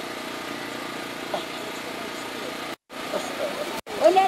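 A steady low hum with faint crowd voices behind it. The sound cuts out to silence twice, briefly, near the end.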